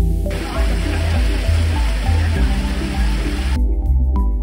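Background music with a steady bass line throughout. From just after the start until shortly before the end, the rush of water pouring from stone spouts into a bathing pool plays under the music, then cuts off suddenly.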